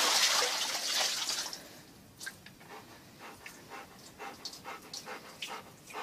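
Water sloshing in a plastic basin as a large dog settles into it, fading out within about two seconds; then faint, short, intermittent sounds of the dog panting in the water.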